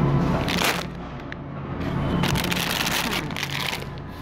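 Plastic produce bag of potatoes crinkling as it is handled, in a short burst about half a second in and a longer stretch in the second half, over steady background music.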